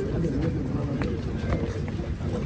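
Indistinct chatter of a group of people talking at once, with a few sharp clicks.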